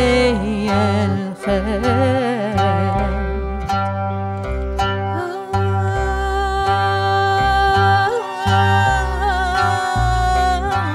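A band playing a song: a woman sings over a qanun, violin, electric guitar and upright bass, the bass playing a steady run of notes underneath. Her voice wavers through ornamented phrases over the first few seconds, then long held notes follow.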